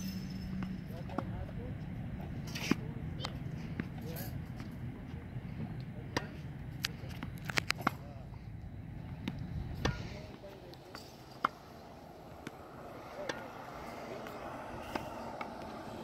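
Tennis balls being hit with a racket and bouncing on a hard court: a string of sharp pops a second or more apart, over a low rumble that drops away about ten seconds in.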